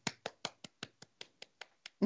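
One person clapping his hands in a quick, even run of about five claps a second, growing fainter toward the end.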